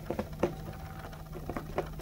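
Toy poodle puppies' paws pattering on carpet as they play: a handful of soft, irregular taps, the loudest about half a second in, over a faint steady low hum.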